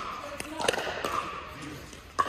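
A couple of sharp pickleball paddle-on-ball hits, echoing in a large indoor court hall, over a background of distant voices.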